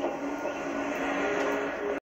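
Television soundtrack played through the set's speaker and picked up off the room: a steady hiss with held low tones, another tone joining about halfway through.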